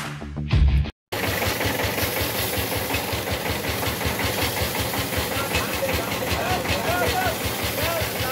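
Background music cuts off about a second in. A belt-driven paddy threshing drum then runs steadily with a fast, even rattle as rice bundles are held against it, with its engine running. Voices come in over it near the end.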